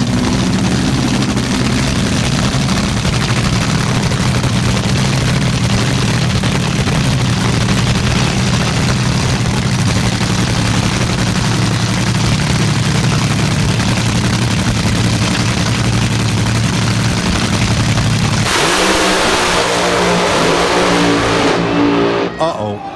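AA/Fuel front-engine dragsters' supercharged nitro-burning V8 engines idling steadily at the starting line. About eighteen seconds in, the engine note changes abruptly and climbs as the throttles open for the launch.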